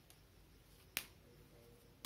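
A single sharp click about a second in, against near silence: a whiteboard marker being handled as it is picked up to write.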